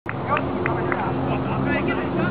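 Short shouts and calls of voices on a soccer pitch over a steady low hum.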